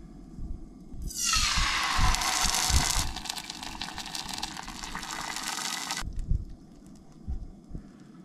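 Red sauce poured from a jar into a hot oiled frying pan on a propane camp stove, sizzling sharply as it hits the oil about a second in, then settling to a steadier sizzle that cuts off about six seconds in. Low bumps from handling the pan run underneath.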